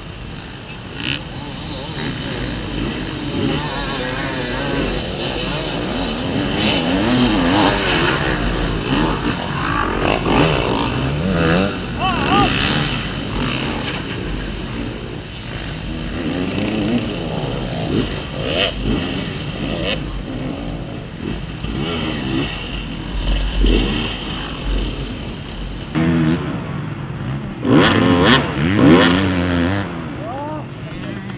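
Enduro dirt bike engine revving up and down in repeated bursts as the rider tries to get the stuck bike over a log in deep mud. Near the end, after a change in the sound, another dirt bike revs hard in short bursts while climbing a tyre obstacle.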